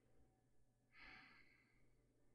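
Near silence, with one faint, soft breath out, a woman's quiet sigh, about a second in.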